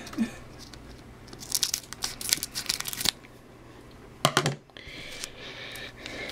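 Crinkling and tearing of a foil trading-card pack wrapper being opened, in a few short bursts.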